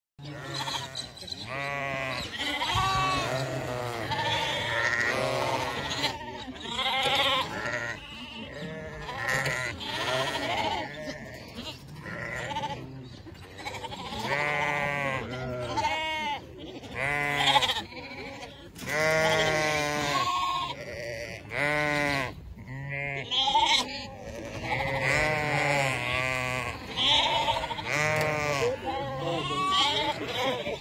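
A yard full of young sheep bleating, with many overlapping calls one after another.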